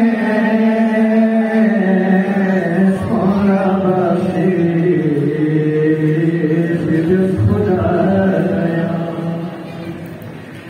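A Balti devotional qasida being chanted: a voice holding long notes that bend slowly between pitches, growing quieter near the end.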